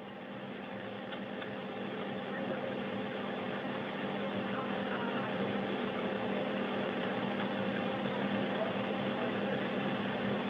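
Steady hiss and low hum of the space station's cabin air: the ventilation fans and equipment, growing gradually louder.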